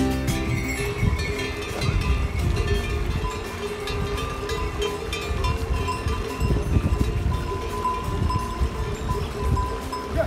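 Bells on pack dzos ringing as the animals walk, a steady jangle that swells and fades, over a low uneven rumble.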